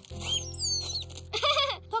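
Cartoon background music with high whistle notes gliding downward, then a short chirping call from a small cartoon bird near the end.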